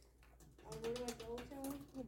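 Speech only: after a moment of quiet, a voice starts speaking softly a little over half a second in.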